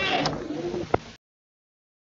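The tail end of a recording: a few short pitched, gliding sounds fade out, a sharp click comes just before one second in, and the audio then cuts off abruptly into dead digital silence.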